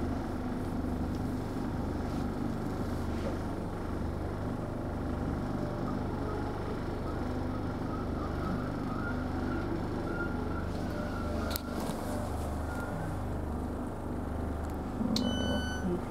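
Interior running noise of a Class 313 electric multiple unit: a steady rumble with a low hum that pulses at regular intervals and a faint wavering whine in the middle, as the train draws into a station. About a second before the end, a repeated electronic beep starts.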